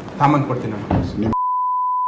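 A man talking in a leaked audio recording, cut off a little over a second in by a steady, pure high beep lasting about a second. The beep is a censor bleep covering an abusive word.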